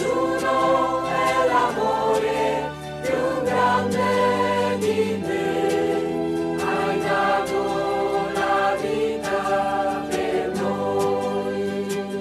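Choral hymn music: voices singing held chords over sustained bass notes.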